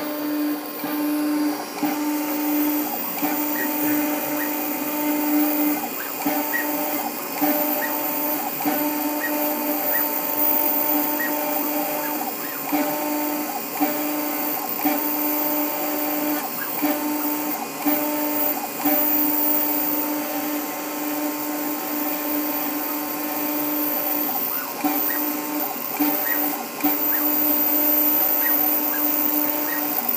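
New Hermes Vanguard 4000 engraving machine running a job, its spinning diamond drag bit cutting into an anodized aluminum plate. The motors hum in a few steady tones that cut in and out every second or so as the head moves through the lettering.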